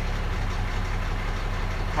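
Cummins diesel engine of a 2017 Mack truck idling steadily at about 700 rpm, during a cylinder cutout test run from a scan tool.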